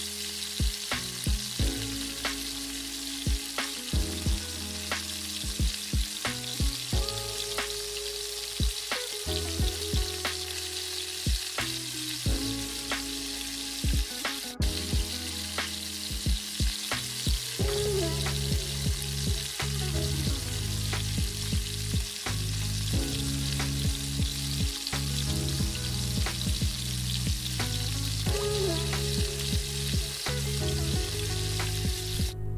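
Leftover fried rice and breaded prawns sizzling in a frying pan as they are reheated and stirred, with low background music under the frying.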